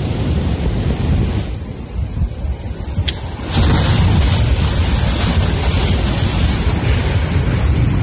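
Wind buffeting the microphone over surf breaking on a rocky shore, a steady rough rumble that grows louder about three and a half seconds in. A single sharp click about three seconds in.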